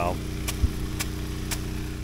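Impact sprinkler clicking about twice a second as its arm strikes the jet, over the steady hum of a trash pump's Honda GX390 engine running.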